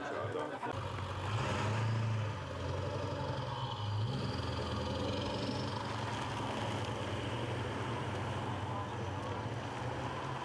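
Engines of a motorcade of large SUVs driving slowly away: a steady low engine drone with a brief laugh at the very start.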